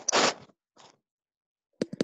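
Pen strokes scratching on a writing tablet: one scratchy stroke about half a second long, then a shorter fainter one, with a few sharp clicks near the end.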